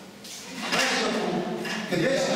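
Speech: a man lecturing, beginning about half a second in after a brief lull.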